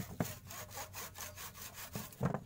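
Hand saw cutting through a woody cassava stem in quick, even back-and-forth strokes, about six or seven a second.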